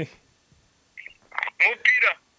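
A voice heard over a mobile phone's speakerphone during a call: a couple of short, thin-sounding words, starting about a second in after a brief quiet gap.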